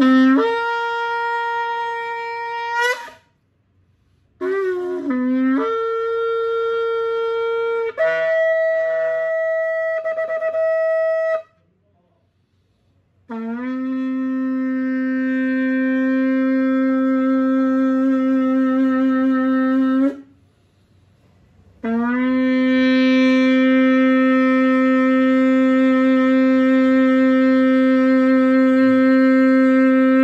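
Sable antelope horn shofar blown through its run of notes: three short blasts stepping up to higher notes, each jumping up from a lower start, then two long steady blasts on the low note, each lasting about seven to eight seconds.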